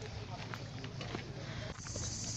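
Footsteps on a gravel and stone path, a run of short irregular scuffs and crunches. Near the end a high, steady insect buzz starts up.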